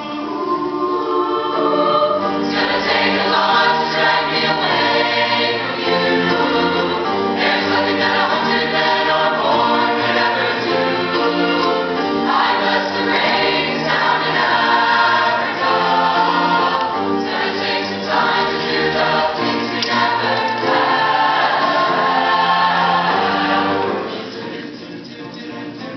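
Mixed chamber choir of male and female voices singing an African folk song in harmony, swelling to full voice about two seconds in and holding it.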